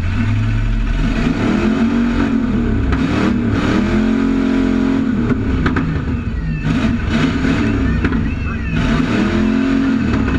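Demolition derby car's engine revving up and falling back about four times, heard from inside the car.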